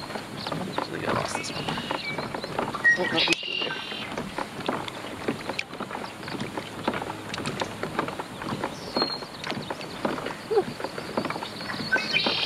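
A man laughs briefly, and irregular small clicks and knocks come from a fishing rod and reel being worked in a kayak as a hooked fish is played.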